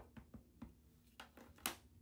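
Soft taps of a plastic-cased Perfect Medium ink pad being dabbed onto an acrylic-mounted stamp, with a sharper click near the end as the pad is set down on the table.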